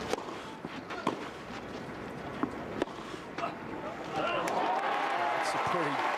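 Tennis ball struck by rackets on a grass court: a serve and a short rally of sharp hits over about three and a half seconds. About four seconds in, the crowd breaks into loud cheering and shouting as the point is won.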